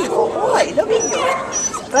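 Three-month-old pit bull mix puppy whimpering and yipping in short cries that rise and fall in pitch.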